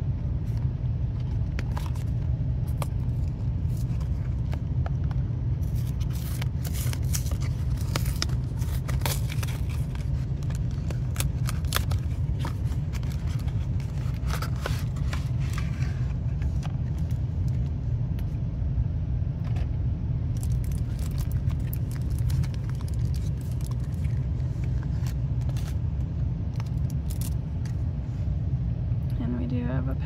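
Handling and opening a Lorcana trading-card starter deck's packaging: scattered sharp crackles and taps, busiest in two long stretches. A steady low rumble runs under them throughout.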